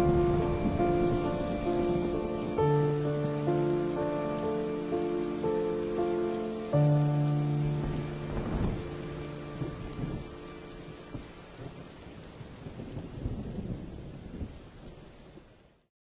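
A music cue of held chords, changing every second or so and fading away over the first eight seconds, laid over steady rain. Low rumbles of thunder come in about eight and a half seconds in and recur after, and the whole mix fades out near the end.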